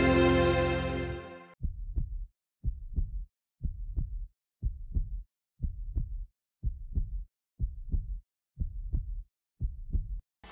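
Music fades out in the first second or so, then a heartbeat sound effect takes over: low double thumps, lub-dub, about once a second.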